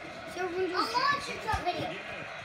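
Children's voices, high-pitched and indistinct, talking and calling out, with a short low thump about three-quarters of the way through.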